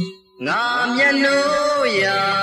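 A male voice singing a long held note in a 1980s Burmese pop song. It starts just under half a second in, after a brief pause, and slides down near the end.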